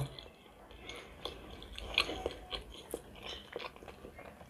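A person chewing a mouthful of lavash and pork head cheese close to the microphone: faint, irregular soft clicks and smacks of the mouth.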